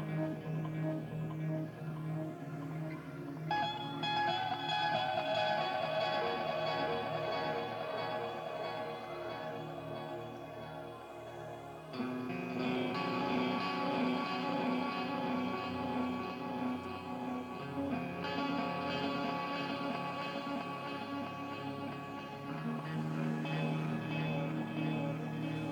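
Live rock band playing, with sustained guitar and keyboard chords that change every few seconds.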